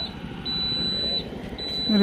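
A steady, thin high-pitched tone that sounds twice, each time for just under a second, over a low background hum of the roadside.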